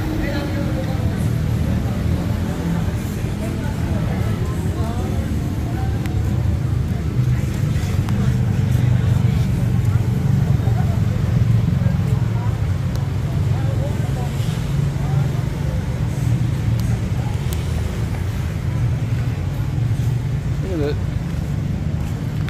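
Outdoor street ambience: a steady low rumble of road traffic, with indistinct voices of people talking in the background.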